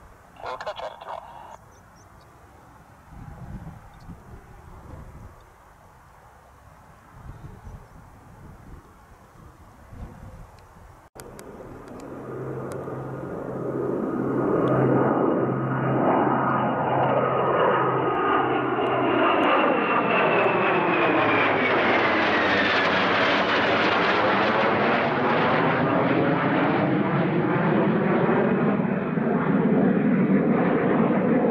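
Jet noise from a pair of F/A-18 Hornets' twin turbofan engines. It builds from about twelve seconds in and then holds loud and steady as the jets pass overhead. A high turbine whine in it falls in pitch as they go by.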